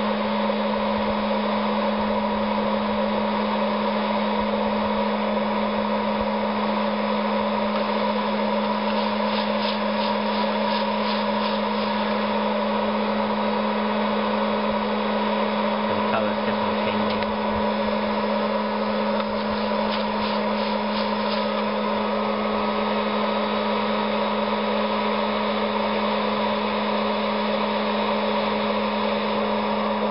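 A 900 W hot-air popcorn popper used as a coffee roaster running steadily, its fan and heater blowing hot air through the tumbling coffee beans with a constant hum. A few faint clicks come through now and then as the roast nears first crack.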